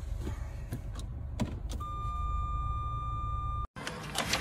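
Low, steady rumble inside a car's cabin with a few light clicks. About halfway through, a steady high-pitched tone comes in and holds for about two seconds, then everything cuts off abruptly.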